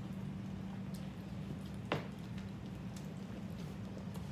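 Chewing and wet mouth sounds of people eating hoagie sandwiches, with one sharp click about two seconds in, over a steady low hum.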